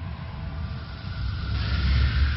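A deep, steady rumble with a rushing hiss over it that swells near the end, typical of a cinematic whoosh or rumble sound effect in an animated intro.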